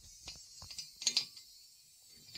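A few faint, light metallic clicks of a steel hex key moving against a brake hub's wheel-bearing nut while its clamping screw is lined up, the loudest about a second in.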